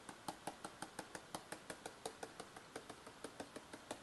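Stylus tapping on a tablet screen: a quick, even run of light ticks, about six a second, as the dots of a scatter plot are drawn one by one.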